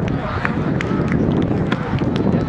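Wind buffeting the camera microphone, a dense low rumble, with people talking in the background and a few short sharp ticks.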